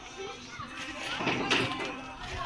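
Indistinct children's voices outdoors, with no clear words, swelling to a louder, noisier stretch about one and a half seconds in.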